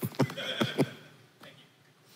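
A short burst of laughter: a few quick, breathy ha-ha pulses in the first second, fading out soon after.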